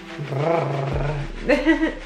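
A woman's low, drawn-out "mmm" of pleasure, held for about a second, followed by a short laugh near the end.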